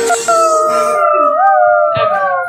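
A dog howling along to a song: one long howl that lifts in pitch about halfway through, then slides slowly down.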